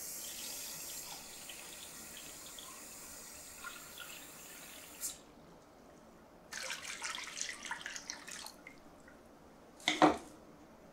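Water sloshing and dripping in a stainless steel tray just filled from a measuring jug, fading away over the first few seconds. A second stretch of water splashing comes a little past halfway, and a sharp knock, the loudest sound, comes at the very end.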